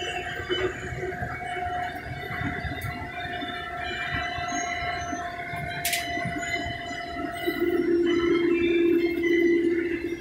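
Combine harvester running while cutting soybeans, heard from inside the cab: a steady whine of several held tones over a rumbling base. A sharp click comes about six seconds in, and a louder, lower hum comes in about three-quarters of the way through.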